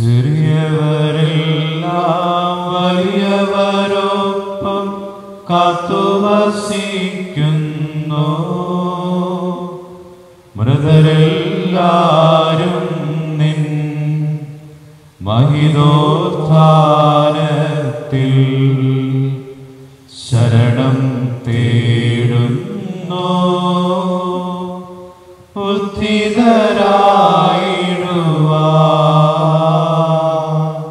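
A single male voice sings a liturgical chant of the Mass in six long, held phrases of about five seconds each, with a short breath between them.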